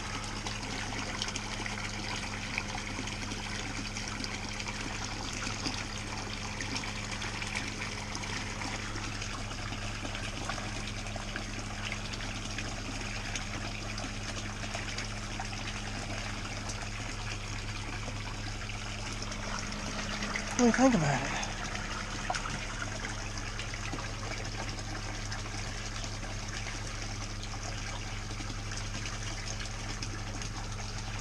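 Water splashing steadily from a PVC return pipe into a pool pond, over the steady low hum of a submersible pond pump. About two-thirds of the way through, a brief voice sound falling in pitch stands out as the loudest moment.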